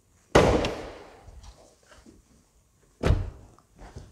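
Car door of a Mercedes-AMG GT43 4-door coupé shut with a heavy thud about a third of a second in, echoing in a large hall. A second similar thud follows about three seconds in.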